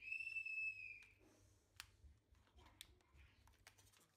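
A clear whistle-like tone lasting about a second, then a few faint sharp clicks and soft rustles of cabbage leaves being folded and pressed against a steel plate.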